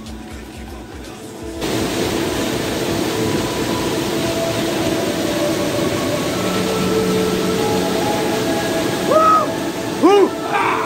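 Steady rushing of a waterfall pouring into a pool, setting in suddenly about a second and a half in, under background music of long held tones. A short rising-and-falling cry comes near the end.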